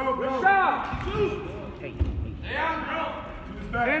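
Shouting voices in a large gym hall, with a couple of dull low thuds about one and two seconds in.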